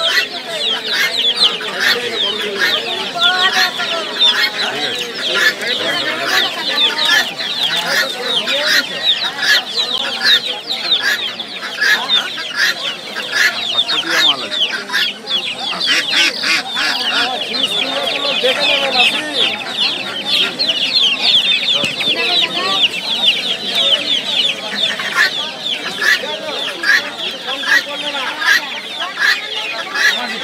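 Many caged poultry chicks peeping all at once: a dense, continuous chorus of short high chirps, with voices in the background.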